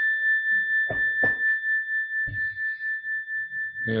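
A single high bell tone rings on after being struck, slowly fading with an even wavering pulse. It is a meditation bell ringing out at the end of a silent meditation.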